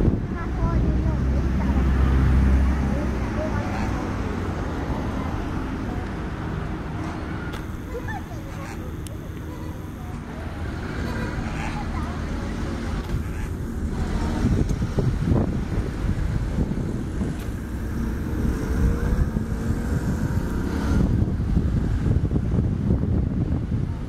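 Outdoor ambience: wind rumbling on the microphone, swelling in gusts, with people's voices in the background.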